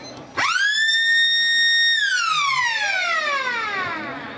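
Football ground siren sounding once: it winds up quickly to a loud, high steady tone, holds it for about a second and a half, then slowly winds down. It signals the end of the third quarter.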